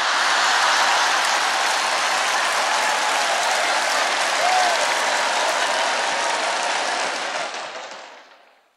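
Large audience applauding: a steady wash of clapping that fades out near the end.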